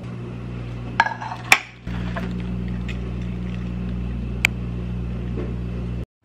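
Microwave oven running with a steady electrical hum, which drops out briefly and comes back louder just before two seconds in. Sharp clicks and a clink of food containers come about a second in, and another click comes later.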